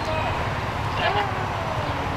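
An indistinct human voice calls out briefly about a second in, over a steady low rumble of idling vehicles and street traffic.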